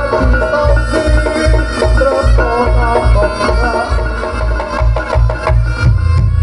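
Live Reog Ponorogo gamelan accompaniment: a slompret (reed trumpet) plays a wavering, gliding melody over a steady drum beat of about two strokes a second.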